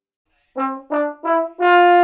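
Large-bore "orchestral" tenor trombone playing a short rising phrase: three short notes, each a step higher, starting about half a second in, then a fourth note held for about a second.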